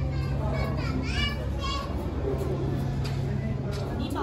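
Ambient voices of people nearby, with high children's voices calling out in the first half, over a steady low hum.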